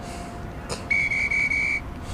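A brief click, then a single steady high whistle-like tone lasting about a second. It is the interval signal marking the end of a 20-second Tabata work period.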